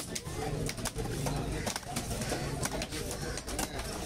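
Cleaver chopping fish on a wooden log block: a run of sharp, irregular knocks, two or three a second.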